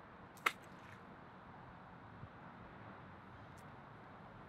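A smartphone dropping into swimming-pool water: one short, sharp plop about half a second in, over a faint steady outdoor hiss.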